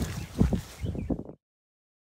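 A few light knocks and handling sounds, then the sound cuts out abruptly to dead silence about one and a half seconds in, where the video edits to a silent slide.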